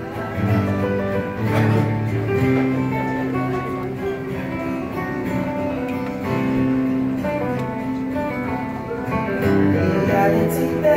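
Acoustic guitars played live in an instrumental passage, strummed chords with picked notes ringing over them, no singing.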